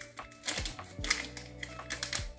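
Lofi background music with a soft beat and held tones, with a few light clicks and taps of small kitchen items being handled.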